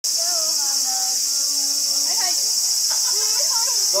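A steady, high-pitched insect chorus that runs unbroken and does not vary in level.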